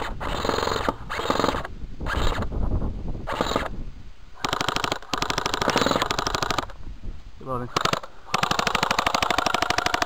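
Airsoft guns firing on full auto in two rapid bursts of about two seconds each, one around the middle and one near the end.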